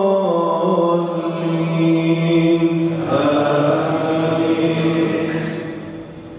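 A man's voice reciting the Quran in melodic tajweed, drawing out long held notes that step between pitches. The phrase ends shortly before the end, and its echo dies away.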